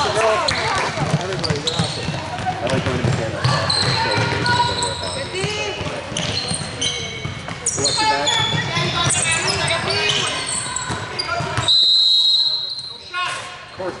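Basketball game in a large echoing gym: players' and spectators' voices, a ball bouncing and short knocks, then one long, loud referee's whistle blast near the end.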